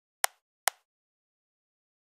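Two sharp computer mouse clicks, just under half a second apart, the first about a quarter second in.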